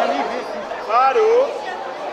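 Spectator crowd chattering, with one voice calling out loudly for about half a second near the middle.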